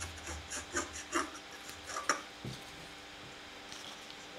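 Scissors snipping through the cardboard lid of a pulp egg box: a run of short, sharp cuts that stop about two and a half seconds in.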